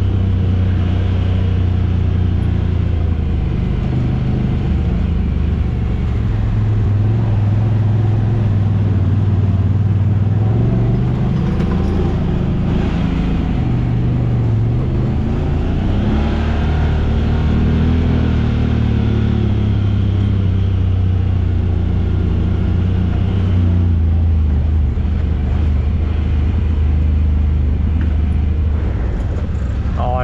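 Honda Talon X side-by-side UTV engine running steadily at low trail speed, its pitch rising and falling a little with the throttle, heard from the driver's seat.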